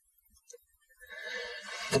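Near silence for about a second, then a man's audible breath drawn in, growing louder over a second, just before he speaks.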